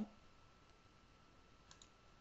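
Near silence with a faint steady high hum, broken near the end by two quick computer mouse clicks.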